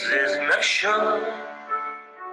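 A man singing a song with instrumental accompaniment, played from an online video: a sung phrase, then held notes that fade toward the end.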